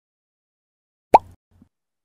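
Logo intro sound effect: a single short plop with a quick upward pitch glide, about a second in, followed by a faint second blip.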